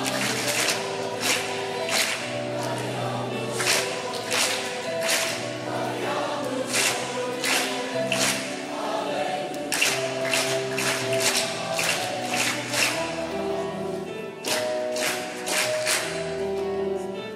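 A youth choir singing an upbeat song in Latin, the singers clapping their hands in rhythm with the music.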